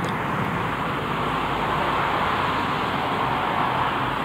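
Road traffic: a steady rush of passing cars that swells a little in the middle.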